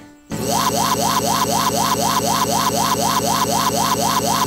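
Audio from a crashed Windows XP virtual machine, stuck in a loop. After a brief drop-out, one short fragment repeats about three times a second as a loud, buzzing stutter, the typical sound of a Windows blue-screen crash.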